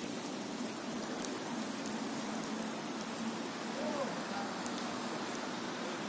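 Steady rain falling, a continuous even patter on wet paving and ground, with faint voices in the background.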